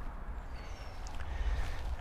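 Quiet outdoor ambience in a wet country lane: a steady low rumble, with a faint, brief high chirp from a bird about half a second in.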